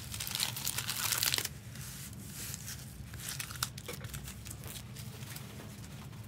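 Wrapped trading-card packs crinkling and rustling as they are handled and stacked on a table, a dense crackle for the first second and a half, then scattered lighter crinkles and clicks.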